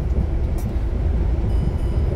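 Steady low rumble inside a truck cab at motorway speed: the engine running and tyres on a wet road.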